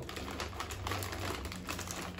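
People chewing crunchy snacks, shrimp crackers with honey-flavoured chips: soft, irregular crunching, with a plastic snack bag crinkling.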